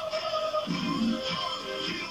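Music playing from a television's speakers, heard in the room.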